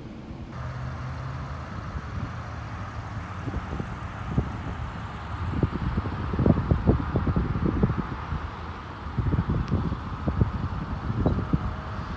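Outdoor air noise with a steady low hum, broken from about four seconds in by irregular low buffeting rumbles as wind hits the phone's microphone, loudest around six to seven seconds in and again near the end.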